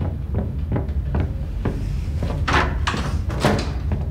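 Interior door being handled: soft regular taps or steps, then three or four louder rattling knocks from about two and a half seconds in. A steady low hum runs underneath.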